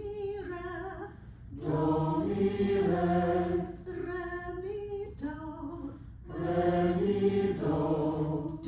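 A woman sings short solfège patterns on do, re and mi, and a class echoes each pattern back in unison: two call-and-response exchanges, the group louder and fuller than the single leading voice.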